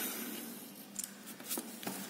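A plastic ruler being slid across paper and lifted off: a soft rubbing or sliding sound, then a few light clicks and taps from about a second in.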